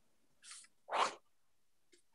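A person's short breathy vocal noise in two parts: a soft hiss, then a louder burst about half a second later.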